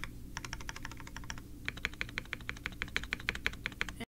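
Fast typing on a Mode SixtyFive 65% custom mechanical keyboard in its isolated top-mount configuration, with lubed, filmed switches and GMK Future Funk keycaps. A quick run of keystrokes, about ten a second, with a brief pause about a second and a half in.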